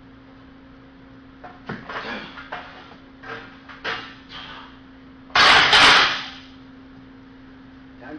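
Short straining grunts and breaths from a lifter struggling through a failed standing barbell press, then about five seconds in a loud, sudden metal crash in two parts, the loaded barbell being slammed back onto the steel power rack.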